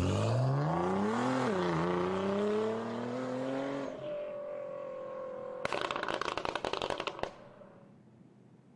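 Livestream Super Chat alert sound: a pitched tone that rises for about four seconds with a brief dip, holds steady, then gives way to a rapid crackling rattle about two seconds long.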